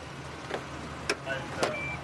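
A Geo Prizm's engine idling low and steady, with a few sharp clicks. Near the end a high, thin electronic chime starts beeping, like a car's door-open warning.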